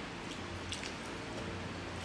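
Faint chewing and small wet mouth sounds of people eating, with a few light clicks, over a steady low hum.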